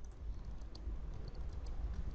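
Computer keyboard typing: scattered faint key clicks over a low, steady hum.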